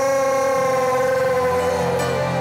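A long, drawn-out shouted cry of 'Juyeo!' ('O Lord!'), one voice held on a single high pitch that sags slowly toward the end: the Korean-style call upon the Lord that opens loud group prayer.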